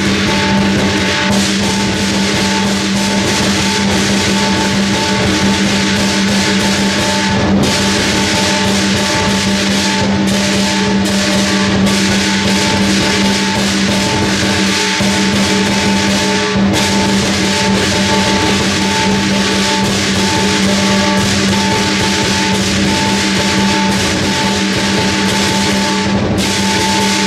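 Lion dance percussion: a large lion dance drum beaten in fast, dense strokes with clashing cymbals and a ringing gong, playing without a break.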